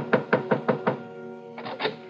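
Knocking on a door: a quick run of about six raps in the first second, then a second short round near the end, over a sustained music chord.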